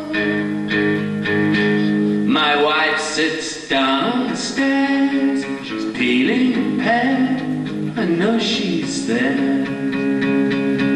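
Live acoustic guitar strummed steadily in chords, with a voice singing a wordless, wavering line over it at several points.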